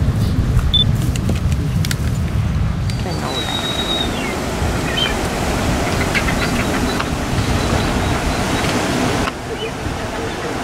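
Wind rumbling on the microphone. From about three seconds in until shortly before the end, surf breaks over rocks in a steady rushing wash.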